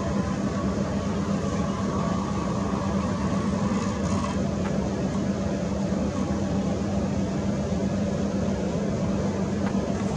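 Steady low rumbling hum with a faint higher tone over it for the first four seconds.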